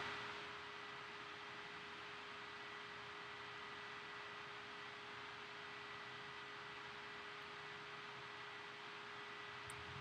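Quiet steady hiss with a faint constant hum tone: room tone and recording noise, with nothing else happening.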